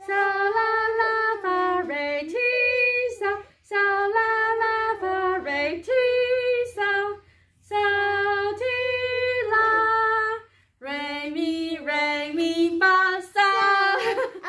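A woman and a young girl singing solfège syllables together, unaccompanied, in four short phrases of held, steady notes with brief breaks between them.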